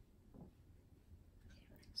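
Near silence: room tone, with a faint soft voice sound about half a second in and more just before speech begins at the very end.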